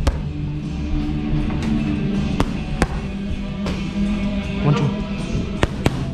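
Boxing gloves smacking training pads in a string of sharp, irregular hits, over steady background music.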